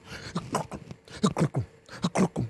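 A man imitating galloping horse hooves with his mouth: short vocal beats, each dropping in pitch, in quick groups of three or four.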